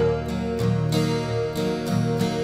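Instrumental intro of a soft pop ballad: acoustic guitar strumming chords over sustained backing tones.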